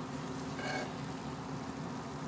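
A steady low background hum, with one short spoken word about a third of the way in.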